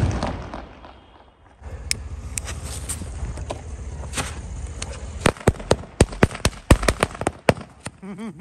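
Diwali fireworks going off: a rushing noise with a few single cracks while a spark-trailing shot climbs, then a quick run of about a dozen sharp bangs, several a second, in the second half.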